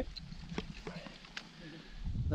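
A quiet pause with a few faint, separate clicks and light rustling near the middle.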